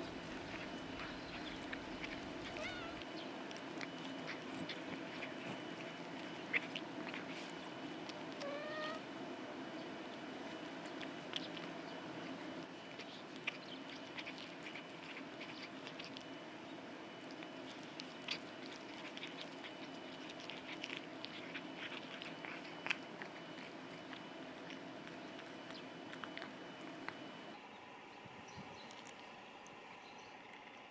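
Cats chewing shredded chicken breast right beside a microphone: wet smacking and scattered sharp clicks of teeth and tongue. The chewing stops near the end.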